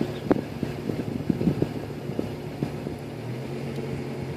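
A vehicle engine running at low, steady revs, its note shifting slightly about three seconds in, with scattered light clicks and knocks over it.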